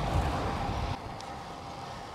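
Wind buffeting a bicycle-mounted action camera's microphone while riding, an uneven low rumble over road hiss that eases about a second in.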